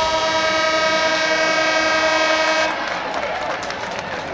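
Ice-rink arena horn sounding one long, steady blast of nearly three seconds that cuts off suddenly.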